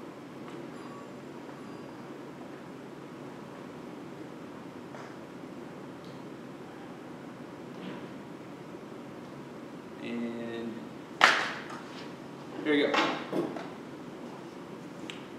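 Steady room tone in a meeting room for about ten seconds. Near the end come a short hummed voice sound, a sudden loud burst that fades quickly, and a moment of brief, indistinct speech.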